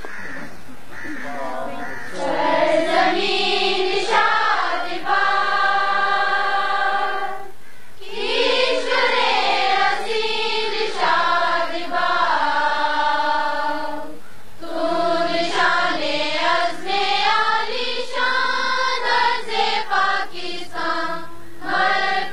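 A choir of children singing a slow song together, starting about two seconds in and going on in three long phrases of held notes.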